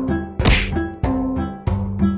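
Background music with a run of pitched notes, cut through about half a second in by a single loud, sharp whack.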